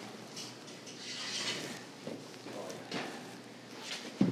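Quiet room noise with a couple of faint knocks about two and three seconds in, from the frittata pan being taken out of the broiler.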